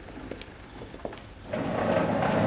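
A heavy metal door sliding open: a few faint clicks, then a loud, steady rushing slide that starts about one and a half seconds in and carries on.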